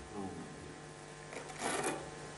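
Quiet room with faint, indistinct voices and a brief rustling noise near the end.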